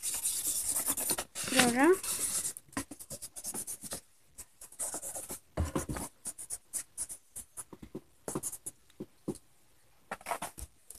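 Felt-tip marker scribbling quickly back and forth on paper, colouring in a drawing; the strokes then turn short and separate, with pauses between them. A brief rising voice sounds about one and a half seconds in.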